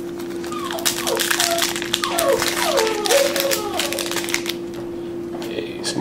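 Foil trading-card pack wrapper crinkling and crackling as a pack of football cards is torn open and handled, over a steady hum. A faint high voice or whine rises and falls in the background during the first few seconds.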